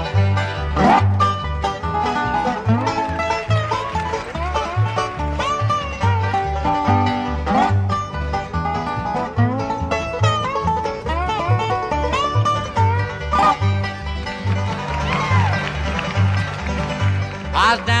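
Bluegrass band playing an instrumental break between verses: five-string banjo and guitar over a steady upright bass beat, with a lead line of sliding notes. Singing comes back in at the very end.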